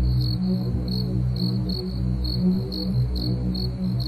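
Crickets chirping in a steady high pulse, about three chirps a second, over a low steady drone in the music bed.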